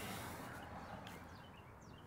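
Faint dogs barking over quiet outdoor background noise that fades slightly.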